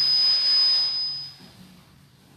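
A high-pitched steady whistle with a hiss around it, lasting about a second and a half before fading out.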